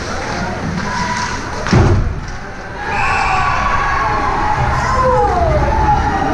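A loud thump at the goal about two seconds in, from a shot being taken, then spectators shouting and cheering as a goal is scored in an ice rink.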